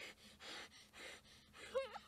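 Faint, quick breaths in three soft puffs, then a short wavering whimper near the end: a frightened girl gasping for breath.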